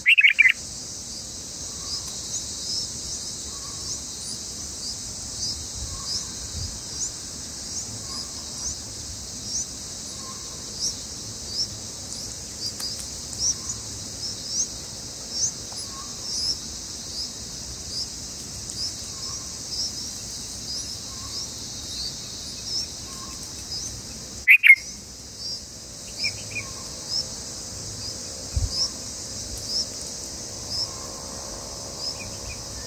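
Short high bird chirps repeating about twice a second over a steady high insect drone, with a louder bird call right at the start and another about 25 seconds in.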